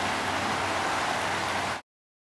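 Steady rushing of a mountain river running over rocks, cutting off abruptly near the end.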